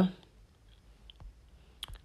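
A spoken word trails off, then a quiet room with a few faint, short clicks, the sharpest pair just before speech starts again.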